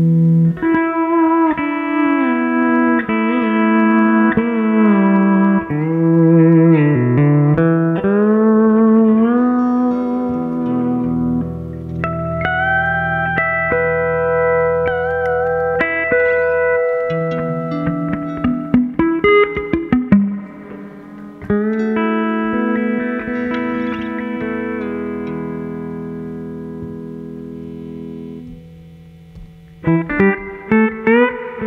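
Franklin pedal steel guitar playing a slow improvised piece: sustained chords whose notes slide up and down in pitch, with an electric guitar accompanying. Near the end a long held chord slowly fades away.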